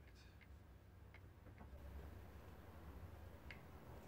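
Near silence with a low hum and a few faint light ticks, about five in four seconds, from handling a stainless Smith & Wesson revolver while its cylinder is rubbed with a cloth.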